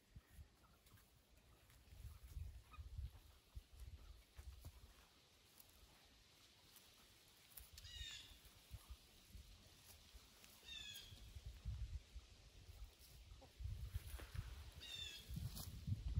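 Near silence with faint low rumbling, broken three times in the second half by a bird's short, high call that steps downward in pitch.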